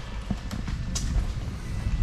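Footsteps on a hard shop floor while a handheld camera is carried, with low rumbling handling noise and two sharper clicks about half a second and a second in.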